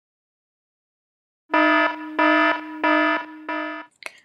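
A warning alarm: four loud buzzing beeps about two-thirds of a second apart, starting about one and a half seconds in.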